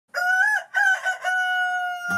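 A rooster crowing once: three short notes and then a long held final note that falls slightly in pitch.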